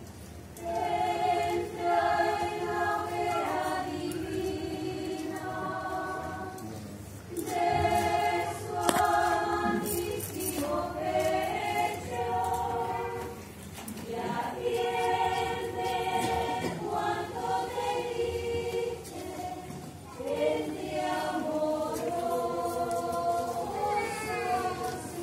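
Unaccompanied choir of women's voices, the convent's nuns, singing a slow hymn to the paso in phrases of a few seconds with short breaks between them.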